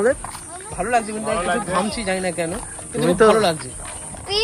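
Voices talking while walking, over a faint steady high hiss.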